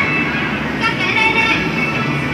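Loud, steady hubbub of an indoor kiddie-ride arcade: voices and high electronic tones over a busy background din.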